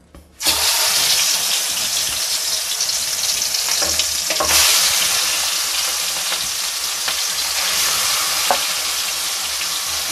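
Pieces of masala-coated rohu fish frying in hot oil in an aluminium kadai: a loud sizzle starts suddenly about half a second in as the fish hits the oil and carries on steadily, swelling again about halfway through, with a couple of light knocks against the pan.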